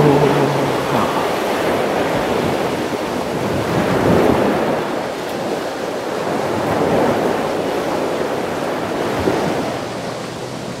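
Ocean surf: waves washing in, the noise swelling and easing several times.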